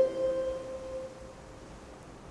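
A single Celtic harp note, plucked and left to ring, fading away over about a second and a half into a pause in the playing.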